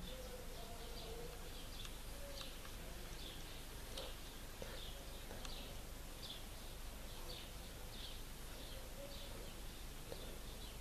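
Quiet background with faint, high bird chirps repeating every half second to a second, and a faint click about four seconds in.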